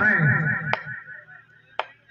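A man's drawn-out commentary voice trails off in the first second. Two sharp clicks follow about a second apart, leaving a faint steady hum.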